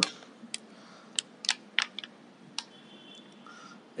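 A handful of short, light clicks and crinkles, scattered unevenly over the first three seconds: handling noise of the Intel Galileo Gen2 board in its plastic anti-static bag as it is lifted out of its cardboard box.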